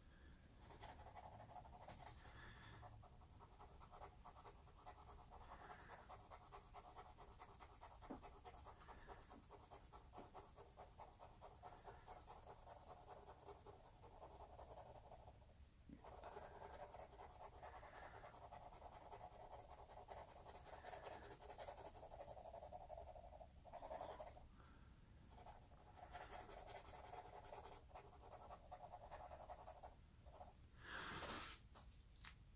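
Graphite pencil sketching on paper: faint, quick back-and-forth strokes, with a couple of short breaks.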